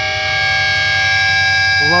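A steady, siren-like chord of several sustained tones, like a horn held on, with a low even throbbing underneath. It is part of a film sample, and a voice comes in near the end.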